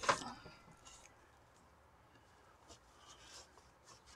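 Nylon paracord rustling and scraping as it is handled and pulled through the lacing on a deer-hide drum, with a brief louder scrape at the start and a few faint rustles about three seconds in.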